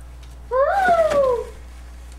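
A pet animal's single drawn-out cry, about a second long, rising in pitch and then sliding slowly down, over a low steady hum.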